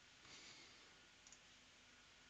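Near silence: room tone, with two faint clicks about a second and a quarter in, computer mouse clicks.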